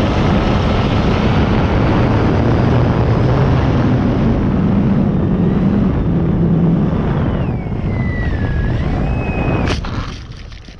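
Electric motor and propeller of an E-flite Night Timber X RC plane, heard from an onboard camera under heavy wind rush. Late on the motor whine falls and then rises again as the throttle changes. Near the end a sharp knock comes as the plane strikes the ground and noses into the grass.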